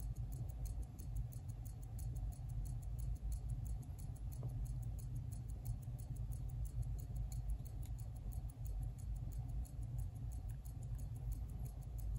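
Vintage Gruen Precision 17-jewel mechanical watch movement (Uhrwerke FE 140-2) running with its caseback off, giving a faint, rapid, even ticking. A low rumble from the hand-held recording lies underneath.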